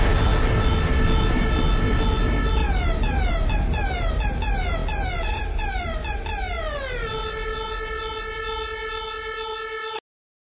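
Homemade electronic music: a heavy low drone under held tones, with many repeated falling pitch sweeps like siren glides. It eases slightly in level and cuts off suddenly at the end.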